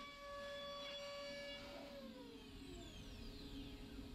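Datron Neo's high-speed milling spindle whining faintly at a steady pitch, then about two seconds in the pitch falls away as the spindle winds down at the end of the cut.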